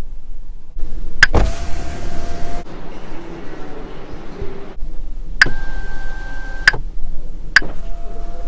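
Power side window of a Zeekr 009 MPV running: a click about a second in, then a steady electric motor whir for about four seconds that stops abruptly. After it come a few sharp clicks, two of them with a short steady hum between them.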